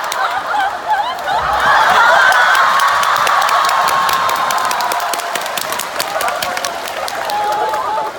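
Live theatre audience applauding and cheering, with many voices calling out and laughing over dense clapping. It is loudest about two seconds in and slowly dies down.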